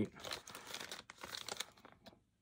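Plastic soft-bait packages, among them a Berkley PowerBait MaxScent Flat Worm bag, crinkling as they are shuffled in the hands and one is lifted up. The rustling stops near the end.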